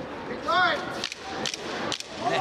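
Sharp slaps of kickboxing strikes landing, gloves and kicks on skin, a few in quick succession in the second half. A short shout comes before them, about half a second in.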